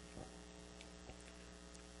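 Near silence with a steady electrical mains hum, and two faint ticks.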